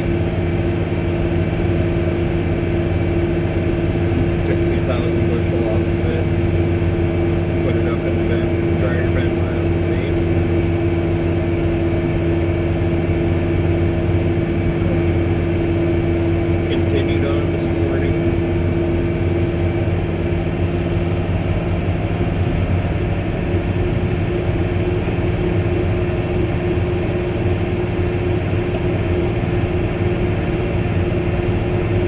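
Truck engine running steadily at cruising speed, heard from inside the cab, with a steady drone and tyre noise from the gravel road.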